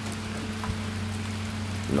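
A steady low hum under an even hiss of outdoor background noise.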